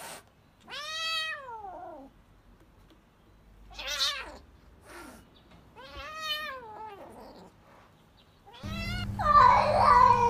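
Orange tabby kitten meowing: several drawn-out mews a few seconds apart, each rising then falling in pitch. Near the end a louder call cuts in over a steady low hum.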